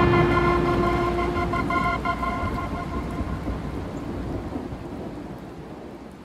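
Recorded rain and thunder closing a ballad: the song's last held notes die away in the first couple of seconds, leaving steady rain that slowly fades out.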